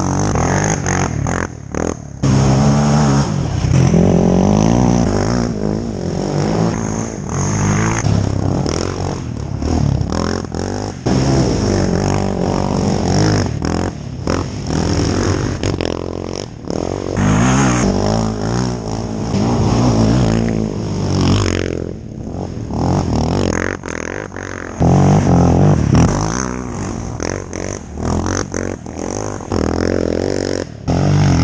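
Sport quads, one of them a Suzuki LTZ 400 fitted with a swapped-in Yamaha Raptor 700 single-cylinder engine, revving hard as they pass close by one after another. The engine pitch rises and falls with the throttle and gear changes, and each pass-by brings a loud surge.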